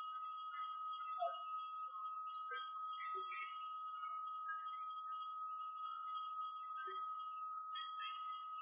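A steady high-pitched whine runs under a quiet pause, with a few faint, brief soft sounds scattered through it.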